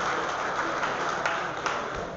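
Audience applause after a point, with scattered claps, slowly dying away.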